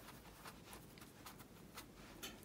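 Near silence with a few faint, soft scratches of a watercolour brush working paint in a palette well.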